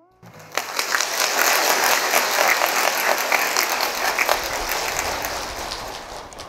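A large audience applauding: many hands clapping together, starting just after the music stops and slowly dying away near the end.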